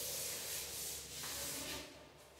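Chalkboard eraser wiping across a chalkboard: a steady rubbing scrub that stops just before the end.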